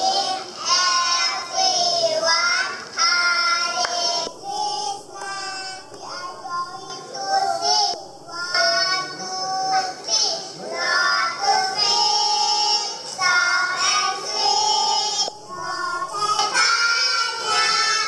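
A group of young children singing a song together, phrase after phrase, into microphones.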